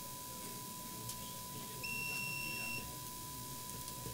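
A single electronic beep, one steady high tone held for about a second near the middle, over a faint continuous lower hum-like tone.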